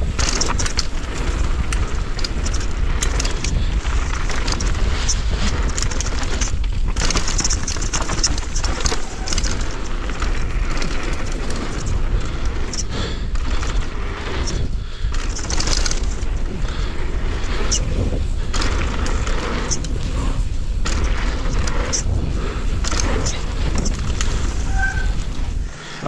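Wind rushing over the on-bike camera's microphone as a Rocky Mountain Maiden downhill mountain bike rides fast down a dirt trail, with tyre noise on the dirt and chain and frame clatter from the bumps.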